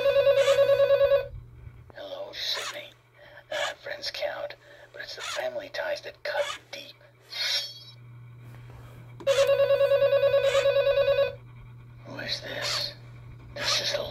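Gemmy animated Ghostface figure's small speaker playing its routine on weak batteries: a fast-pulsing telephone ring for about two seconds, then a raspy villain voice, a second ring about nine seconds in, and more voice. A steady low hum runs under it all.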